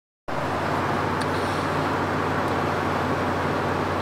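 Steady road and engine noise inside a car's cabin while driving on a highway, with a low hum underneath.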